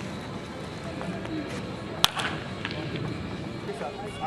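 A single sharp crack of a wooden baseball bat hitting a pitched ball in batting practice, about two seconds in, over a steady background of ballpark ambience and distant voices.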